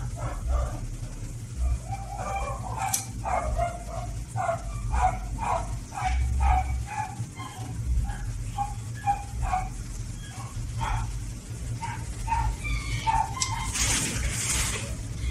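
A dog barking repeatedly, short barks about twice a second, over a steady low hum.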